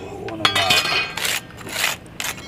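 Several sharp, hard clinks with a scrape as concrete bricks are handled and knocked against one another.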